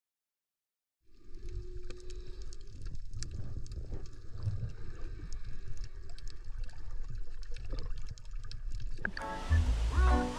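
Muffled underwater audio from a camera below the sea surface, starting about a second in: a low rumble of moving water with scattered crackling clicks. Near the end, acoustic guitar music comes in louder over it.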